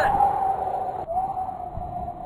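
A long, steady high-pitched cry, one held tone broken briefly about a second in: cartoon characters screaming as they fall.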